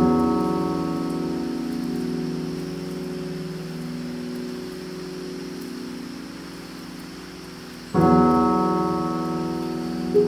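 Film score of sustained keyboard chords. One chord is struck and left to ring, fading slowly, and a second chord is struck about eight seconds in. A faint steady high hiss runs underneath.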